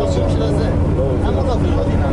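Steady low rumble of a moving bus, heard from inside the cabin, with people talking over it.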